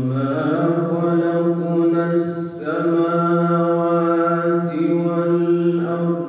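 A man's solo unaccompanied voice chanting in long held notes, stepping up from a lower note at the start, with a short break for breath about two and a half seconds in.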